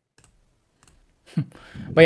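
A pause in a voice call: a few faint clicks, then near the end a short voice sound and a breath as a speaker starts to talk.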